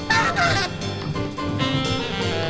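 Jazz quartet of tenor saxophone, piano, bass and drums playing. Right at the start the tenor saxophone lets out a loud, high, wavering cry that bends down in pitch, then moves on to held notes.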